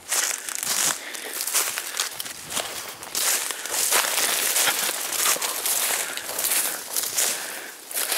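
Footsteps crunching and crackling through dry fallen leaves and twigs on a woodland floor, in irregular steps.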